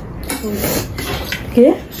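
Chopsticks and a fork tapping and scraping on plates as noodles are picked up, with a short spoken word near the end.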